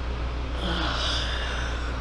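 A person's long breathy exhale during a slow neck stretch, starting about half a second in and fading near the end, over a steady low hum.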